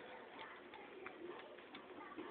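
Puppies faintly growling at play, soft short rolling growls, with a few light clicks.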